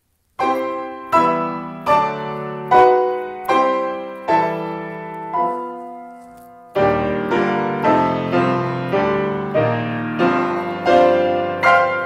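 Grand piano played solo in slow, hymn-like chords, each struck and left to ring, starting about half a second in. A held chord fades out near the middle, and the playing resumes more fully about seven seconds in.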